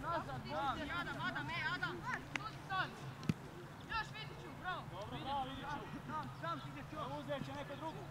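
Young footballers' voices calling and shouting to each other across the pitch during open play, many short calls in quick succession. A couple of short knocks are heard a little before the middle, under a steady low hum.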